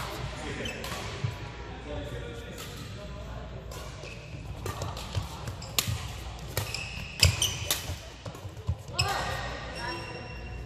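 Badminton rackets striking a shuttlecock in a doubles rally: sharp, irregularly spaced hits that ring out in a large hall.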